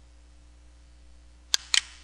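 Faint steady hum, then two sharp clicks of a computer mouse in quick succession about a second and a half in.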